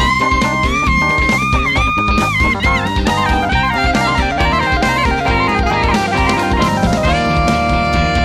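A live band playing an up-tempo instrumental passage: a drum kit keeps a steady beat under keyboards, and a saxophone carries the lead with long held notes that bend in pitch.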